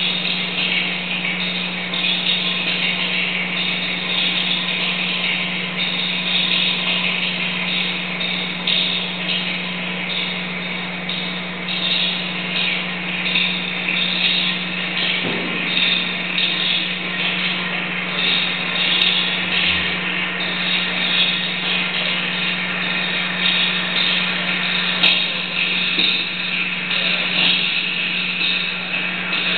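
Harsh electronic noise from a live noise-music set: a dense, continuous hiss-and-crackle wall with a flickering, shifting upper texture over a steady low drone, played through a small guitar amplifier and effects pedals.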